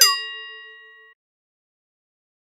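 Edited-in cartoon sound effect: a bell-like ding struck at the bottom of a falling whistle. It rings and fades for about a second, then cuts off suddenly.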